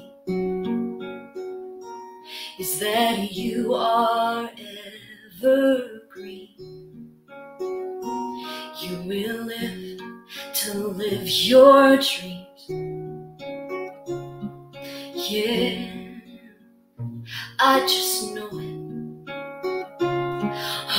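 A woman singing a slow ballad to her own acoustic guitar accompaniment: plucked guitar notes ring under sung phrases that come and go, with short guitar-only stretches between them.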